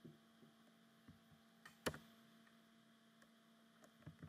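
Near silence: a steady low electrical hum, with one sharp click a little under two seconds in.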